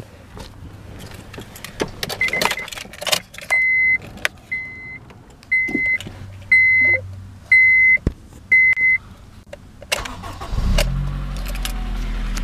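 Key clicks and rattles, then a car's dash warning chime beeping six times about once a second. Near the end the 2002 Honda Civic Si's K20 four-cylinder engine cranks, catches and settles into a steady idle.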